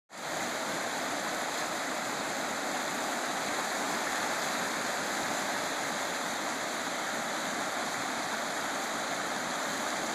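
Muddy floodwater rushing in a swollen river and churning white over a submerged barrier: a steady, even rush of water.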